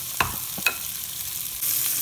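Sliced venison sausage sizzling in bacon grease in a cast iron pot, with two short clicks in the first second; the sizzle gets louder near the end as a wooden spatula turns the slices.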